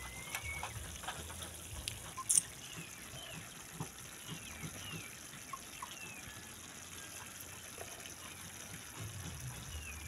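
Quiet outdoor background with faint, short, falling bird chirps about once a second, and a brief sharp hiss about two seconds in.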